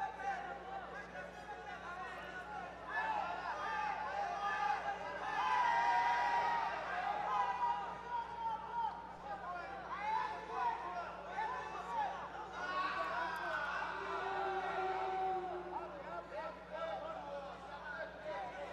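Several raised voices calling out over crowd chatter in a large hall, overlapping and loudest a few seconds in, over a steady low hum.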